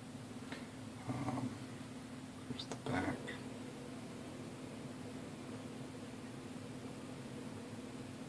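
Two brief low murmurs from a man's voice, about one and three seconds in, with a few faint clicks, over a steady background hum.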